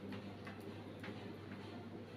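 Faint ticking, a few light ticks about half a second apart, over a low steady hum.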